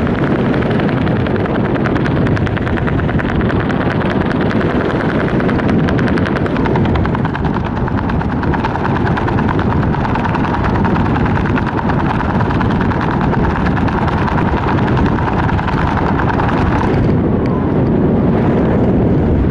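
Loud, steady wind rushing over the microphone of a skydiver's helmet camera under an open parachute canopy, with a rapid flutter for the first several seconds.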